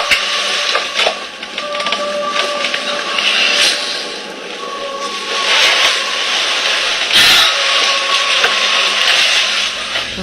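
Loud hiss and crackle of static, with a faint steady whine underneath and a few sharp cracks.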